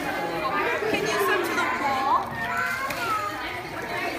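Children's voices calling and chattering over one another, with adults talking among them; one high call rises sharply about two seconds in.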